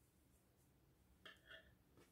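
Near silence: room tone, with two faint, brief sounds a little past halfway.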